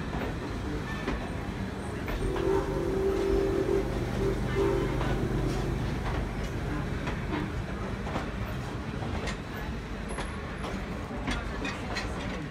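Vintage riveted steel passenger coaches rolling slowly past close by, with a low rumble and scattered clicks from the wheels on the rails. About two seconds in, a steady tone sounds for around three seconds.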